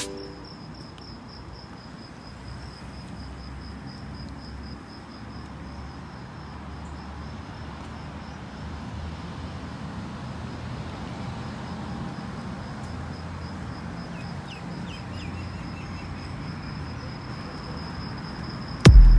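An insect, cricket-like, trilling steadily with a high, rapidly pulsing note over a low, steady outdoor rumble.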